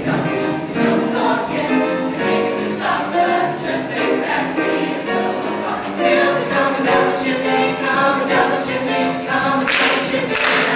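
Mixed-voice show choir singing in harmony, several parts sounding at once.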